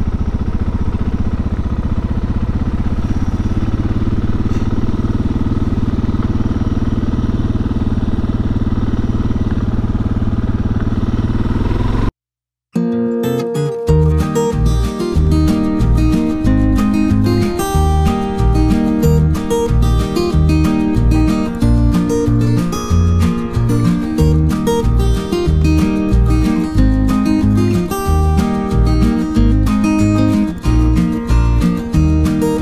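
Suzuki DR650's single-cylinder engine running steadily under way. About twelve seconds in the sound cuts out for a moment, and strummed acoustic guitar music with a steady beat takes over.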